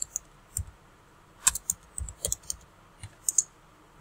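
Computer keyboard typing: about a dozen short keystrokes in small irregular groups with pauses between them.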